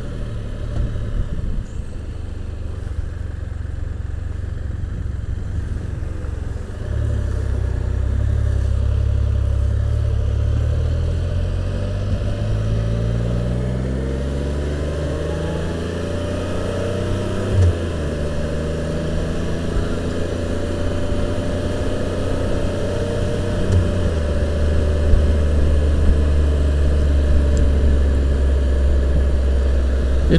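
The engine of a 2015 Can-Am Spyder RT three-wheeled roadster, a Rotax 1330 inline three-cylinder, running while the trike is ridden on the road. It gets louder about a quarter of the way in and climbs steadily in pitch as it accelerates around the middle, with two short knocks later on.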